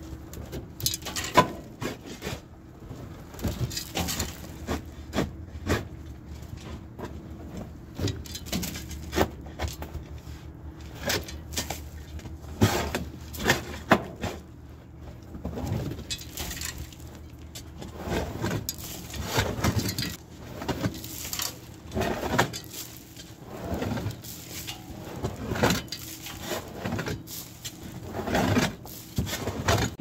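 Irregular scraping and knocking as caked, spoiled corn is cleared by hand from the bottom of a grain dryer. A faint steady hum runs underneath.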